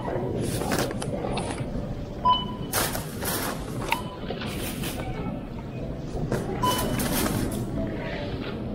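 Thin plastic grocery bags crinkling and rustling in irregular bursts as groceries are bagged at a checkout, with three short electronic beeps from the checkout equipment.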